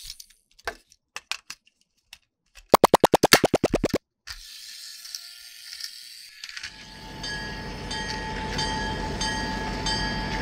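Plastic toy train parts clicking as the engine body is snapped onto its battery-powered chassis, with a quick run of loud clicks about three seconds in. From about two-thirds of the way through, the toy engine's electric motor and gears run with a steady whirr.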